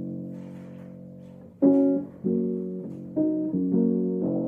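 Upright piano played: a low chord struck at the start rings and dies away, then a louder chord about a second and a half in, followed by a string of chords about every half second.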